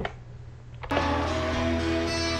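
A quiet pause, then about a second in, acoustic guitars of a live unplugged rock performance start abruptly and play on steadily.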